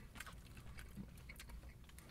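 Faint chewing and small mouth clicks of people eating chocolate-coated peanut butter ice cream bars.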